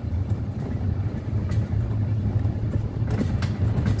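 Golf cart driving along a paved path: a steady low rumble from the moving cart and its tyres, with a few faint ticks.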